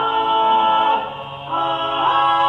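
Four-man a cappella group singing wordless sustained chords in close harmony. A chord is held for about a second, the level drops briefly, then a new chord begins.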